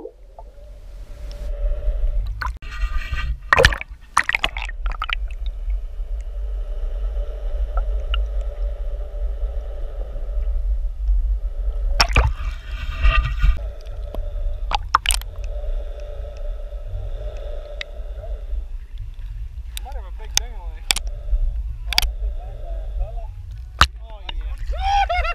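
Muffled underwater sound picked up by a submerged camera: a deep steady rumble and a droning hum, with sharp knocks now and then.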